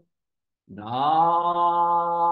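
A man chanting a Shin Buddhist sutra on long held notes. The note breaks off at the start, a short silence follows for a breath, and his voice comes back sliding up in pitch into the next steady held note about a second in.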